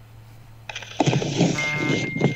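Low hum, then about two-thirds of a second in a sudden burst of hiss, followed from about a second in by an indistinct voice. Near the middle a steady high tone sets in and holds.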